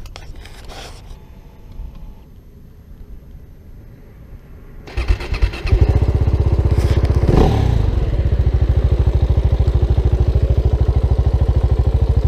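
A KTM motorcycle engine is started about five seconds in, after a few seconds of quiet handling noise. It gives one quick rev, then settles into a steady, evenly pulsing idle.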